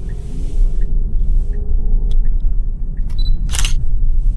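Steady low rumble of road and wind noise from a moving electric car, with a few faint ticks and a brief hiss a little before the end.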